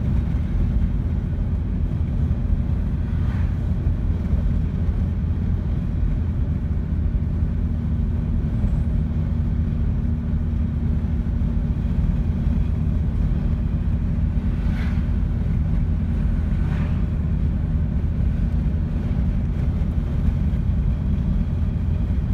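Steady low rumble of tyre and engine noise inside a car cabin while driving on a highway.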